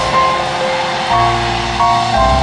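Keyboard music playing sustained chords over held bass notes, with a chord change about a second in and another near the end.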